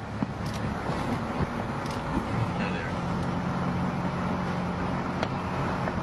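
City street traffic noise, with a vehicle's steady low engine hum setting in about halfway through and a few faint clicks.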